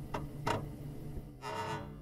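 Intro sound effect over the title shot: a few sharp ticks, then a short pitched note about one and a half seconds in.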